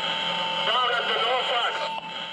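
A voice coming over a two-way radio, thin and narrow-sounding, with a steady tone that drops out while the voice speaks and returns near the end.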